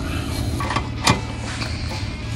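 A new anode rod being threaded into an RV water heater tank and a socket wrench fitted onto it: a couple of light clicks, the sharpest about a second in, over a steady low hum.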